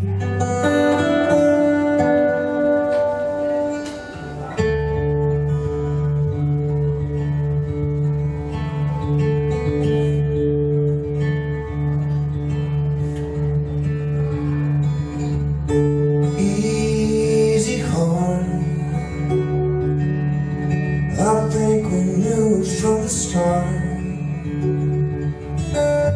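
Solo steel-string acoustic guitar, fingerpicked, playing the instrumental opening of a song with chords left ringing over a sustained low note.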